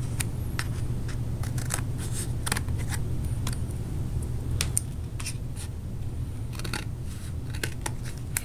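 Scissors snipping through thin cardboard: a string of short, sharp, irregularly spaced snips as the blades work around the points of a cut-out star, over a steady low hum.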